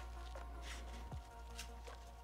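Soft background music, with faint rustles and small clicks as a bungee cord is threaded and pulled through a polymer magazine pouch.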